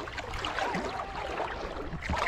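Gentle water lapping and trickling close to the microphone as a swimmer glides through calm river water between strokes.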